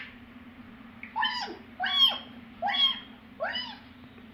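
African grey parrot giving four short calls, about one every 0.8 s, each rising and then falling in pitch.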